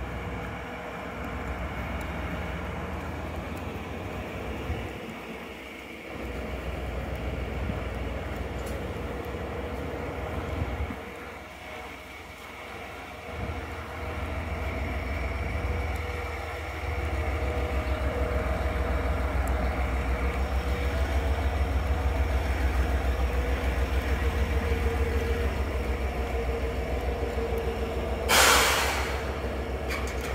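A train standing at the station with its engine idling: a steady low rumble that grows louder about halfway in. Near the end a short hiss of air lasts about a second.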